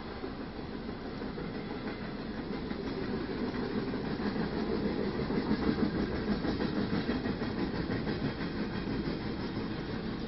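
Freight train of empty oil tank cars rolling past, a steady rumble of steel wheels on rail that grows louder in the middle and eases off toward the end, heard from inside a car.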